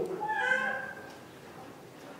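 A short high-pitched cry, about a second long, wavering and fading out, pitched well above a man's speaking voice.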